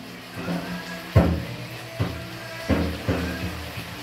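Cartoon music playing from a television, with four sharp knocks over it, the first about a second in and the loudest.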